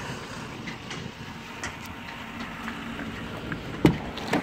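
Steady outdoor background noise with wind on the microphone, with a faint low hum and a few light ticks. Just before the end comes one sharp click as the pickup truck's door latch is pulled open.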